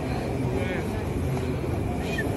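Steady low rumble of busy public-space ambience, with faint distant voices.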